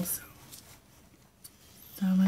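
Faint handling sounds of a paper sheet being lined up on a slide paper trimmer: soft rustling and a few light clicks, spread across the quiet stretch between words.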